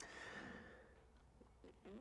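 A man's faint, soft exhale that fades away within the first second, then near silence.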